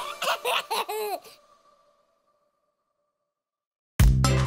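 A baby giggling in quick bursts for about a second, fading out soon after.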